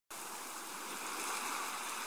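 A steady rushing hiss with no tone in it, slowly growing louder.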